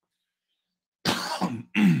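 A man coughs twice into a close microphone, starting about a second in.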